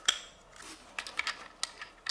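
A handful of sharp clicks and light taps as a knife kit's orange plastic housing is handled and fitted onto its black metal handle.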